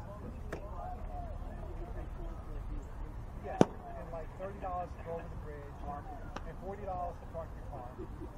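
A baseball smacks once, sharp and loud, into a catcher's leather mitt about three and a half seconds in, with two fainter clicks of ball on glove before and after, over distant voices and chatter of players on the field.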